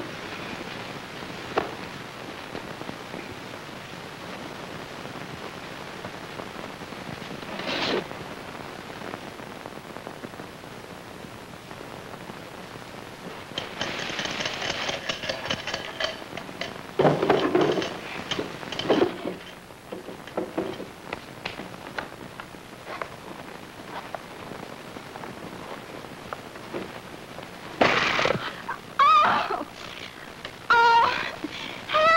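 Steady hiss of an old film soundtrack, with a few brief louder bursts of sound in the middle and near the end.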